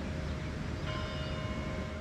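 Outdoor ambience: a steady low rumble with a faint, steady tone through it, and faint higher tones joining about a second in.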